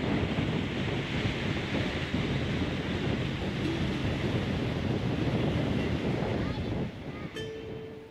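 Wind buffeting the microphone and water rushing past the hull of a fishing boat running at speed, with a low engine hum underneath. The noise dies down about seven seconds in.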